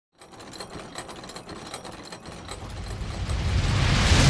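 Sound effect for an animated logo intro: a quick run of mechanical clicks, about four a second, over a low rumble and hiss that swell steadily louder toward the end.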